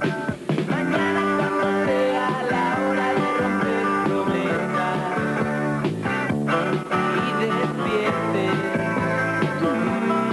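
Rock band playing an instrumental passage: electric guitars over a drum beat, without vocals.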